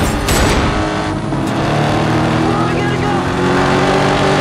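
A car engine revving as the car speeds toward the listener, with a couple of handgun shots right at the start.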